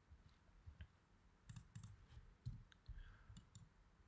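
Faint, scattered computer mouse clicks, a handful of short separate clicks spaced irregularly over a few seconds in near silence.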